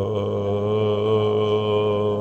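A man's voice holding one long, steady sung note, chant-like.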